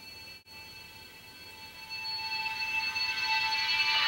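Samsung smartphone ringing with an incoming call: the ringtone is a held chord of steady tones that grows louder from about halfway through.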